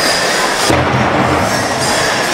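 Pow wow drum group singing an honor song for the shawl dance, a dense mix of group voices and drum in a large hall, with a stronger low surge of voices from about a second in.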